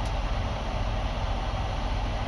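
Vehicle engine idling, heard from inside the cabin as a steady low drone with an even hiss of air over it.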